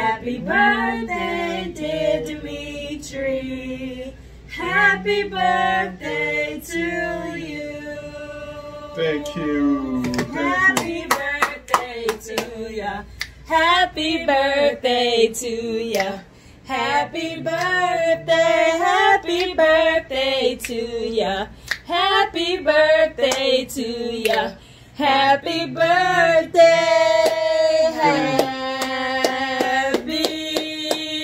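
A small group of men and women singing a birthday song together, with hand clapping joining in about a third of the way through. The song ends on a long held note.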